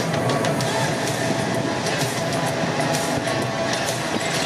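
Stadium crowd hubbub with music playing over the public-address system, including a steady held tone.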